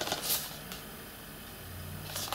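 Faint rustle of a cardboard disc slipcover being handled, a few brief strokes in the first half-second, then quiet room tone with a steady low hum.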